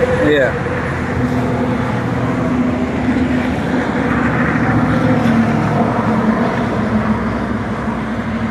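Loud, steady highway traffic: cars and trucks passing, with tyre and engine noise, and one vehicle's hum swelling and fading in the middle.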